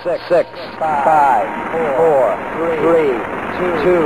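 A voice speaking in short phrases over a steady wash of noise: a spoken-word sample laid into an instrumental post-rock track.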